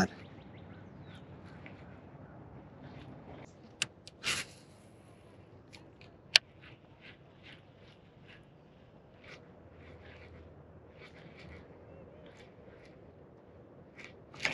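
A series of faint, short bird calls repeating about every half second over a quiet background, with a few sharp clicks about four and six seconds in.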